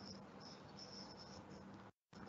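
Near silence: faint microphone hiss with a low steady hum and a faint, intermittent high-pitched whine.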